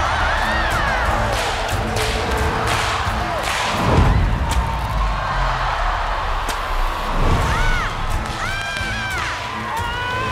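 A bullwhip cracking repeatedly as it is swung around and lashed at a hand-held paper target, a series of sharp cracks with the loudest about four seconds in, over background music with a steady beat. The crowd cheers and shrieks near the end.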